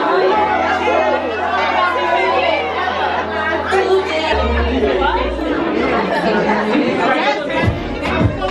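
Several people talking at once in a room, party chatter over background music with long held bass notes; the bass note changes about halfway through.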